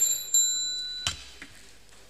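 Small brass desk hand bell rung once, a clear ring about a third of a second in that fades out within a second, followed by a short knock.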